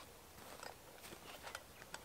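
Faint, scattered crunches and light taps from a wooden siding board being lifted and carried, close to quiet.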